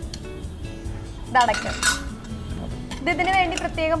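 A sharp metallic clink of stainless-steel cooking utensils a little before two seconds in, over steady background music, with short bits of voice around it.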